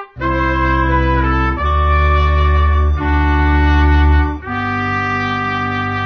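A brass fanfare: trumpets and other brass playing held chords, about four of them, each changing after roughly a second and a half, with the last one held longer.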